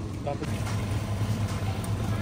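Franke automatic coffee machine running as it brews and dispenses coffee into a paper cup: a steady low motor hum that strengthens about half a second in.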